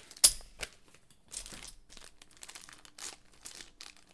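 Small clear plastic bag of dice crinkling and rustling as it is handled. There is a sharp click about a quarter-second in.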